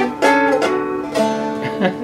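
Seagull Merlin, a dulcimer-style fretted instrument, picked: about four single notes of a melody, each ringing on into the next.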